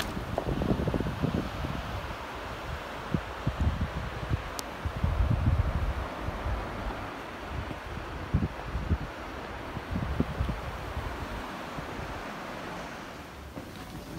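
Wind buffeting the microphone in uneven gusts, a low rumble over a steady hiss, easing off near the end.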